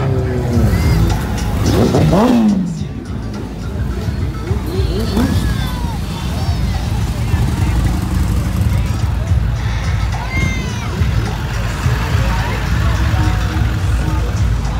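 Constant low rumble of vehicle engines and street traffic, with music and voices over it and a pitched sound sweeping up and down about two seconds in.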